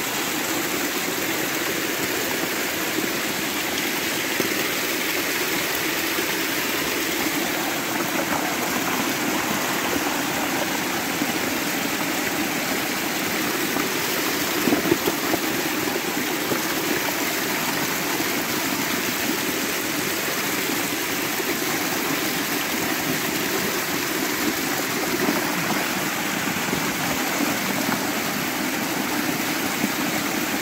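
Spring water gushing strongly out of a rocky bank and cascading over stones in a steady rush. The spring is new and swollen by the recent rains.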